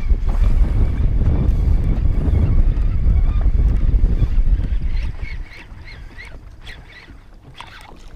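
Wind buffeting the microphone, a loud low rumble, that dies down about five seconds in.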